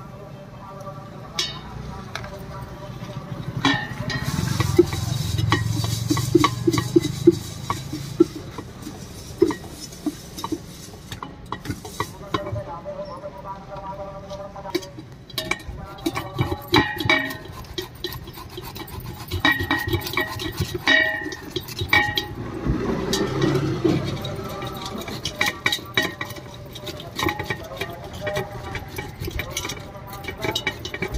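Metal clinks from a knife cutting a tomato over a steel pot, then a handheld steel grater scraping as raw mango is shredded over the pot, in many quick strokes and clicks. People talk in the background.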